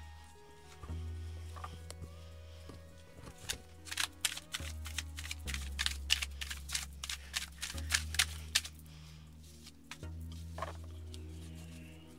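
Soft background music with long sustained low notes, and over it a deck of Egyptian tarot cards being shuffled by hand: a rapid run of short card clicks and flicks from a few seconds in until about two-thirds of the way through.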